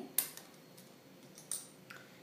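A few light clicks and taps of hands handling strips of red fondant on a granite countertop. A sharp click comes just after the start, a second about a second and a quarter later, and a fainter tick near the end.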